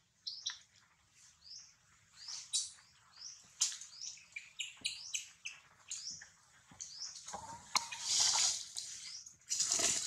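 High-pitched animal chirps: many short, upward-hooked squeaks repeated irregularly. A louder stretch of rustling-like noise follows in the last couple of seconds.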